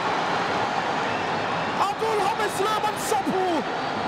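Football stadium crowd noise in a TV broadcast just after a goal, a steady roar. From about halfway through, excited voices shout over it in short rising and falling cries.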